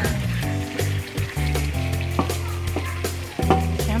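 Chicken pieces sizzling in a non-stick pan as they are stirred, with scrapes and clicks of the stirring, cooking in the juices they have released. Background music with a steady bass line plays underneath.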